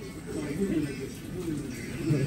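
Low, indistinct voices murmuring, quieter than the talk around them.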